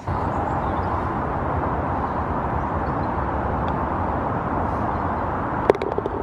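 Steady outdoor rush of wind and distant road traffic, with a single sharp click near the end.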